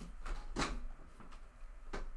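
A few faint clicks and knocks in a small room, the strongest about half a second in and another just before the end.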